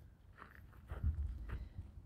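Faint footsteps on a gravel path, about three steps half a second apart, with a low rumble from the moving phone.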